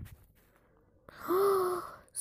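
A person's drawn-out voiced sigh about a second in, lasting nearly a second, its pitch rising slightly and then falling away.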